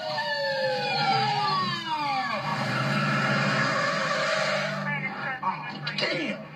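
Police siren winding down, several tones falling in pitch together over about two seconds. It is followed by a steady rush of car noise with a low engine hum that stops about five seconds in.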